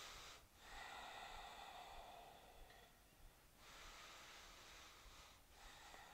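Faint, slow, deep breathing, in and out through the nose, each breath lasting two to three seconds with a short pause between, from a person holding a yoga pose.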